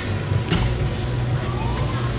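Arena ambience with a steady low hum, and a single sharp thud about half a second in: a gymnast's feet landing on the balance beam between leaps.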